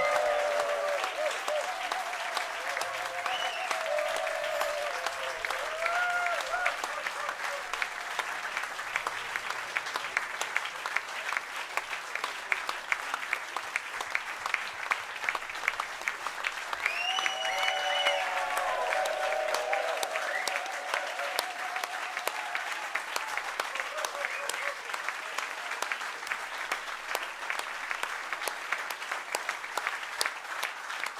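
Audience applauding steadily, with a few voices calling out now and then: near the start, a few seconds in, and again past the midpoint.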